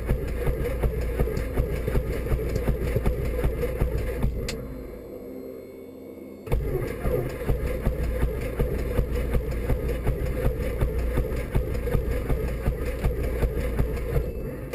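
Piston engine and propeller of a Robin single-engine light aircraft running at low power on the ground, heard from inside the cockpit, with a regular pulsing beat. About four seconds in, the sound drops away for some two seconds, then cuts back in suddenly with a click.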